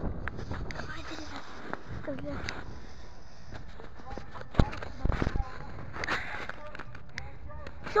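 Wind rumbling on the microphone, with a few sharp handling knocks about four and a half and five seconds in, and brief bits of voices.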